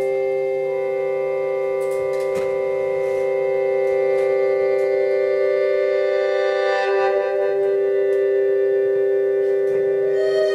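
Accordion holding a steady, organ-like two-note chord in a free improvisation with electric guitar and double bass, with a few faint clicks.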